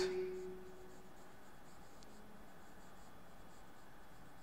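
Faint sound of a marker writing on a whiteboard, a string of short, light strokes as letters are written.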